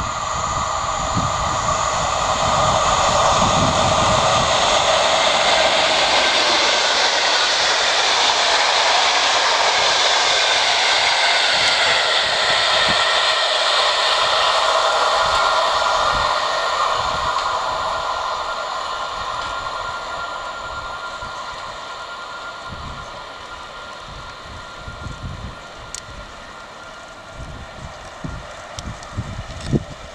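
Electric-hauled passenger train passing on an electrified main line: the rush of wheels on rail swells over the first few seconds, holds loud for about a dozen seconds as the carriages go by, then fades steadily as the train recedes.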